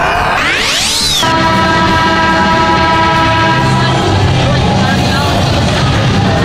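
Broadcast graphic transition sound: a rising swoosh sweep for about the first second, then a held chord of music.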